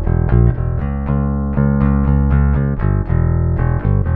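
Electric bass guitar picked with a polished bronze NPV metal pick, played straight into an audio interface with no effects. It plays a run of picked notes, with one note held for about two seconds in the middle, then quicker notes again near the end.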